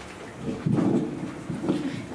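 Microphone handling noise: low, rumbling bumps as a handheld microphone is handled and passed over, loudest just under a second in, with another bump near the end.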